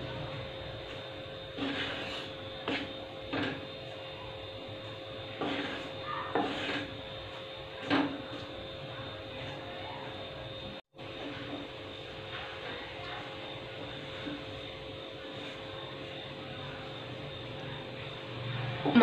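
Wooden spatula stirring and scraping dry wheat flour as it roasts in a kadai, a handful of short scrapes in the first half, over a steady low hum.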